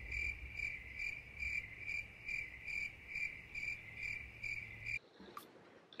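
Cricket-chirping sound effect: a steady high trill pulsing about two and a half times a second, the stock 'awkward silence' gag, which cuts off suddenly about five seconds in.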